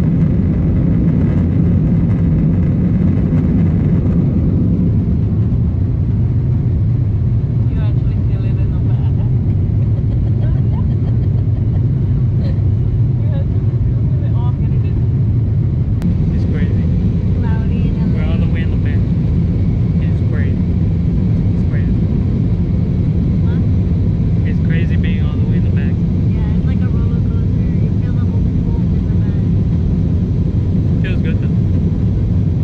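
Airliner cabin noise in flight: a loud, steady low rumble of jet engines and airflow. Faint voices come in over it from about eight seconds in.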